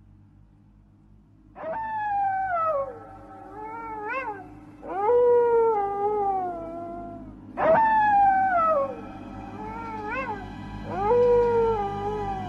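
Eerie animal howling cries, used as a horror sound effect over a low steady drone. A long falling cry, a few short rising yelps and a held cry play about 1.5 seconds in, and the same sequence repeats about six seconds later.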